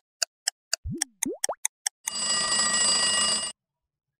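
Countdown-timer sound effect: a clock ticking about four times a second, then three quick upward swoops about a second in, then an alarm ringing for about a second and a half to signal that time is up.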